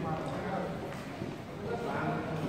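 Hurried footsteps on a staircase, a quick patter of steps, under voices talking.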